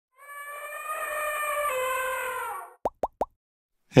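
Intro logo sting: a held, horn-like pitched note that swells for about two and a half seconds and steps slightly down in pitch partway, followed by three quick rising plops.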